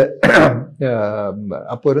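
A man clearing his throat once, briefly, near the start, followed by a drawn-out, wordless hesitation sound before his speech resumes.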